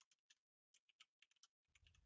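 Faint computer keyboard typing: a quick run of key clicks as a password is entered, with a short pause about half a second in.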